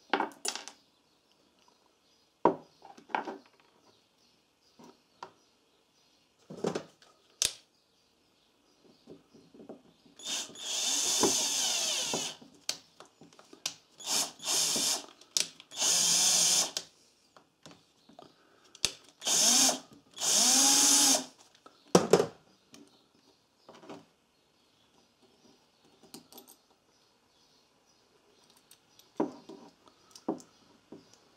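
Small electric screwdriver driving screws back into a small-engine carburetor during reassembly. It runs in about six short bursts of a second or two each, through the middle of the stretch. Light clicks and taps of small metal parts being handled come before and after.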